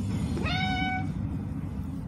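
A domestic cat gives one short meow about half a second in. The pitch sweeps up quickly, then holds level for about half a second.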